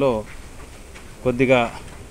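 Speech only: a man speaking Telugu in short phrases, with a pause of about a second between them.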